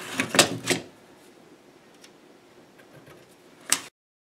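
Steel tape measure and pencil handled against an oak frame: a few clicks and knocks in the first second, then a quiet stretch and one sharp clack near the end, after which the sound cuts off suddenly.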